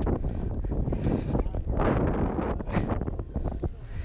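Wind buffeting the microphone of a body-worn camera on an open boat deck, a rough, gusty rumble that rises and falls.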